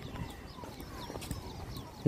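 Faint outdoor background of footsteps on a dirt path, with scattered short high chirps.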